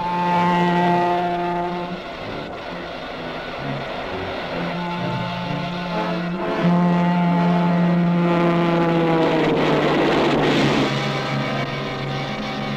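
Train air horn sounding long blasts, the last one sliding down in pitch as the train passes, followed by a loud burst of noise about ten seconds in.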